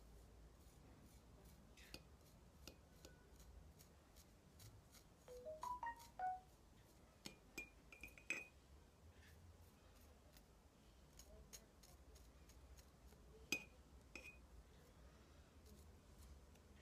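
Faint, light ticks and clinks of a knife blade tapping and scraping at a dry orchid seed pod over the rim of a glass jar as the seeds are shaken out. A few brief faint tones come in the middle.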